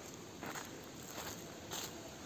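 Footsteps on gravelly dry earth, about three steps a little over half a second apart.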